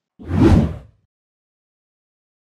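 A single whoosh sound effect, swelling and fading over just under a second, as used for an editing transition.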